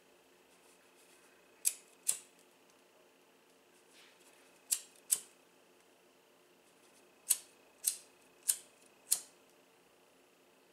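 Pocket lighter flicked on and off in short bursts, giving sharp clicks in pairs about half a second apart, four pairs in all, over a faint steady hum.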